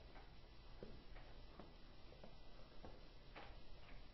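Near silence: low room tone with a few faint, irregularly spaced ticks.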